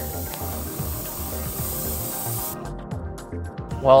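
Airbrush spraying a white zenithal highlight coat onto a miniature: a steady hiss that cuts off about two and a half seconds in.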